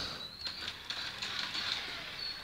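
Small toy RC car's electric motor giving a faint high whine as the car drives forward, fading out under a second in, with a few light clicks and wheel patter on a wooden floor.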